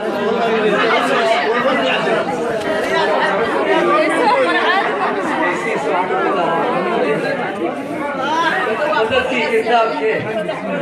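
Several people talking over one another: continuous overlapping chatter.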